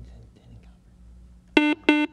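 Quiz-show buzzer sounding twice near the end: two short electronic tones at one steady pitch, a contestant buzzing in to answer. Before it there is only low room tone.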